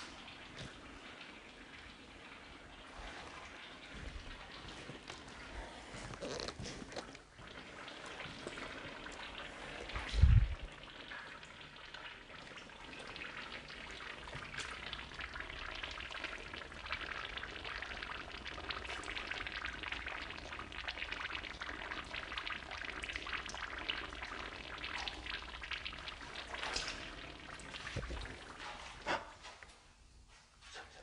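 Water trickling and dripping where it is welling up through the floor, with one loud low thump about ten seconds in.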